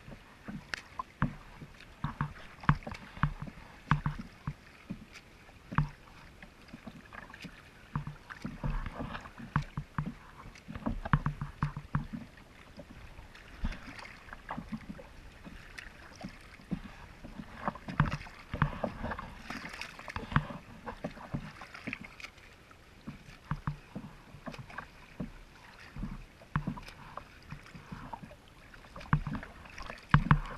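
Choppy lake water slapping and splashing against a kayak's hull, in irregular splashes.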